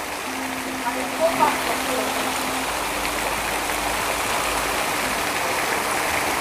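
Steady rushing and splashing of water pouring off a structure onto the surfaces and pool below. A low steady hum sits under it for the first couple of seconds.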